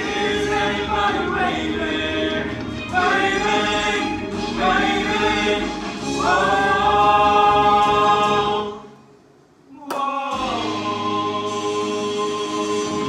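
A male vocal group singing in close harmony. Near the end they hold a long chord that cuts off suddenly, followed by about a second's pause, a click, and then a new sustained chord.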